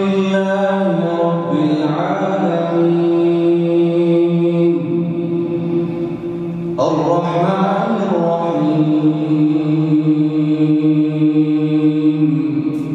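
A male imam reciting the Quran solo in a melodic, chanted style over the mosque microphone, in long held, ornamented phrases. One phrase ends and a new one begins about seven seconds in.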